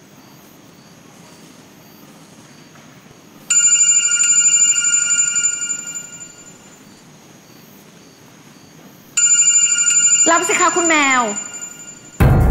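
A phone ringing twice, each ring a bright chord of steady tones that starts suddenly and fades over about three seconds, the second coming about six seconds after the first. A brief gliding sound overlaps the end of the second ring.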